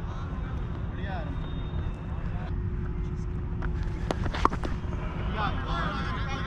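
Steady low wind rumble on a body-worn camera's microphone, with faint distant shouts and a couple of sharp clicks about four seconds in.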